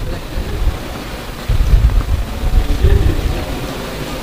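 A low rumbling noise that swells about one and a half seconds in and eases off near the end.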